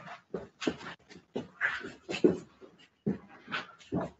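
A dog whimpering and yipping in short, irregular bursts.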